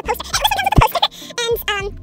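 A person's voice making a wordless silly noise: a loud, rough burst, then a short call whose pitch wobbles rapidly up and down.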